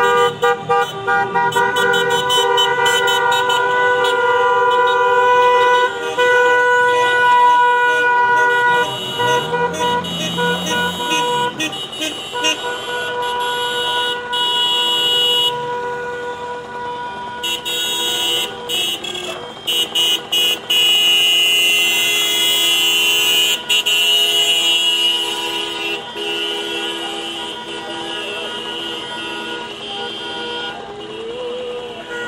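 Many car horns honking together in long, overlapping held blasts as a line of cars drives past. A passing car's engine rises and falls briefly about a third of the way in, and the honking thins out a little near the end.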